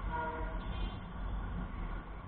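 Riding noise from a Bajaj Pulsar 220F at low speed: a steady low rumble of the single-cylinder engine and wind on the microphone. A vehicle horn sounds briefly, holding one steady note through the first second.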